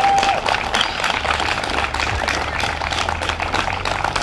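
Audience applauding, with a laugh near the start.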